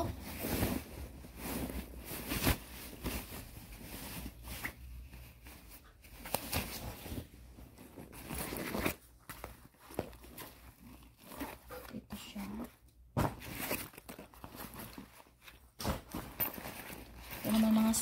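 A bag being handled and opened by hand: irregular rustling and scraping with sharp clicks and knocks.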